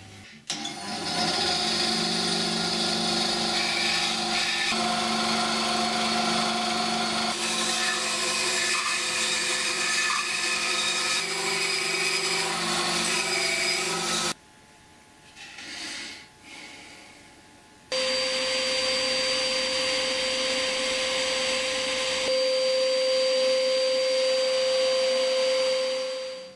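An Einhell bandsaw running steadily as it cuts a glued-up wooden guitar body blank. After a few quieter seconds, a JET 10-20 Plus drum sander starts up and runs with a steady hum and a high whine.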